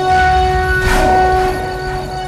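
Dramatic film background score: a loud, held horn-like chord over a low rumble, with a crashing hit about a second in.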